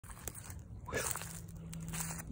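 Faint crunching and crackling of dry leaves and twigs, in scattered small clicks.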